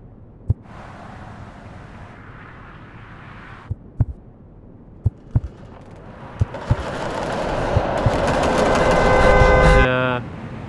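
Sound-design heartbeat thumps in lub-dub pairs under a swell of noise and held tones. The swell builds steadily over the last four seconds, with a fast rattle near the top, then cuts off suddenly.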